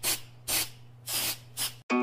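Aerosol clear-coat spray can hissing in short bursts, about three in two seconds, over a steady low hum. Music starts suddenly near the end.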